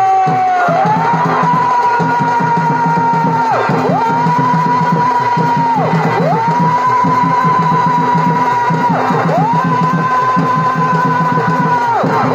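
Chhau dance music: a shehnai-type reed pipe holds a long high note that dips and swoops back up every few seconds, over a fast, steady drum beat.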